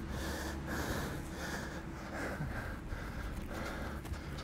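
A man breathing in short, quick puffs, about two a second, as he spins round and round a football.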